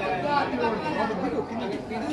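People talking at once: overlapping chatter of several voices, no single voice standing out.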